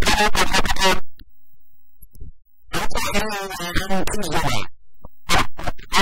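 Speech only: a person talking in three short phrases with brief pauses between them.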